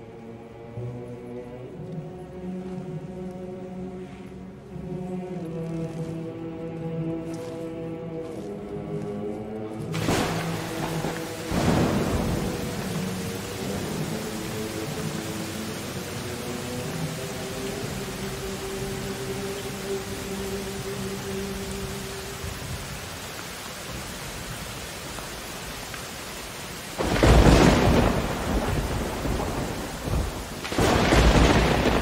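Orchestral film score with sustained notes for the first ten seconds, then the steady hiss of heavy rain with the music fading beneath it. Thunder claps come about ten seconds in, and a louder, longer thunder roll comes near the end.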